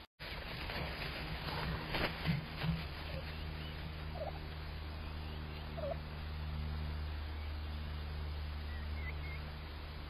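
Wild turkeys feeding give a few short, soft calls, about four and six seconds in and once more near the end, over a steady low hum in the camera's audio.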